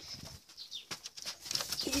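Rustling, scuffing and scattered light knocks as a heavy rabbit doe is handled and set down into a wooden hutch.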